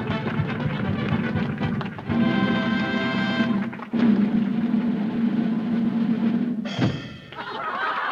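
Theatre orchestra playing brisk stage music with drums, with a chord held for about a second and a half in the middle. A sudden crash comes near the end: the sound effect for a comic's pratfall on stage.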